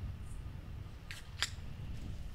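Two short sharp clicks about a third of a second apart, over a low steady rumble.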